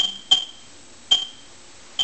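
Neutron detector's audio counter chirping: short, high, irregularly spaced beeps, about four in two seconds. Each beep marks a neutron counted from the americium-beryllium source in the polyethylene flux trap.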